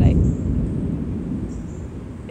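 Rolling thunder from an approaching storm: a low rumble, loudest at the start, dying away over the two seconds.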